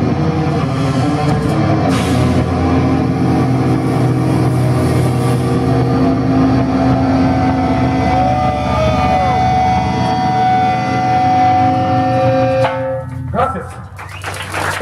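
Live brutal death metal band with distorted guitars, bass and drums playing the final stretch of a song, which cuts off abruptly near the end.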